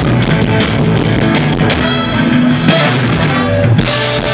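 A live rock band playing an instrumental passage: two electric guitars, one a hollow-body, over a driving drum kit and bass.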